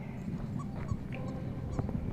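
A few faint, short dog whimpers over a low rumble.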